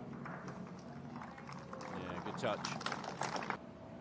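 Golf gallery applauding, a dense crackle of clapping with a commentator's voice over it. It cuts off suddenly near the end.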